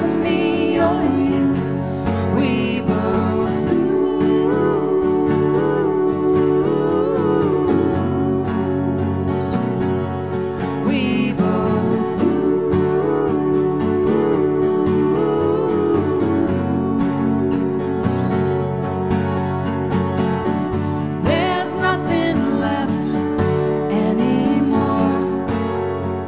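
Live country-folk song played on two acoustic guitars, with singing over the guitars.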